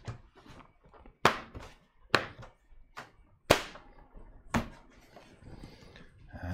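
Front panel of a Kolink Phalanx V2 PC case being pressed onto the chassis, its clips snapping into place: about five sharp clicks spread over three seconds, the loudest about halfway through.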